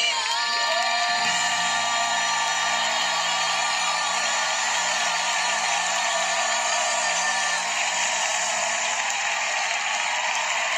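Three boys singing a long, high held final note over backing music while a studio audience cheers and whoops. The held note and music end about eight seconds in, leaving the crowd cheering.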